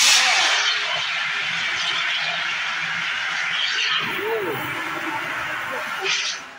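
CO2 fire extinguisher discharging onto a tray fire: a loud, steady rushing hiss that starts suddenly, eases slightly after about four seconds and stops near the end.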